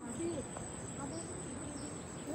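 Insects droning in one steady high-pitched tone.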